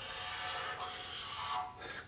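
Felt-tip marker drawing a long line across a white board, a steady scratchy squeak that lasts most of the two seconds.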